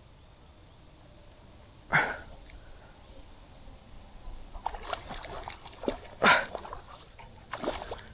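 A hooked carp splashing and thrashing in the water during the fight: a sharp splash about two seconds in, then a stretch of irregular splashing and rustling with another strong splash a little after six seconds.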